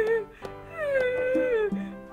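A woman wailing in two long, drawn-out cries, the second sliding down in pitch, over soft background music.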